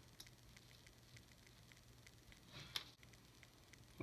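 Near silence: room tone with a faint steady hum and a few faint handling ticks, and one brief soft tap or rustle about two and a half seconds in as a thin armour sheet is pressed onto a small plastic figure.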